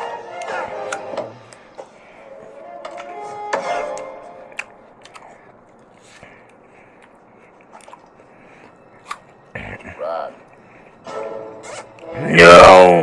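Faint voices and music, quieter in the second half, with a few scattered clicks.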